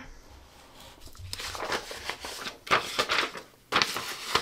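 Plastic window squeegee pressed and dragged across a sheet of paper on a cutting mat, a rough scraping rub, with a couple of sharp knocks near the end as the paper and squeegee are handled.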